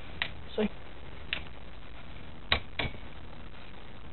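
A few sharp clicks from a Muddy Fox mountain bike's front gear shifter and derailleur being worked by hand: the front gears still move. Two of the clicks come close together late on.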